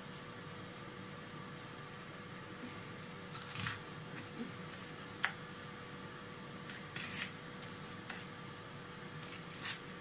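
Knife cutting through an onion and tapping on a plastic chopping board: a few scattered short strokes, starting about three and a half seconds in, over the steady hum of a kitchen fan.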